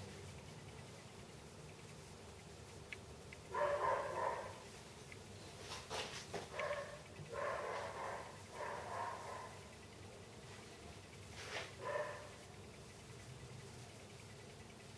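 A dog barking several times in short bursts.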